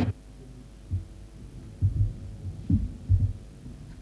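A few soft, dull low thumps at irregular intervals, about a second apart, over a faint steady hum.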